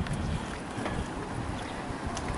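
Wind buffeting the camera microphone outdoors, an uneven low rumble over faint street ambience.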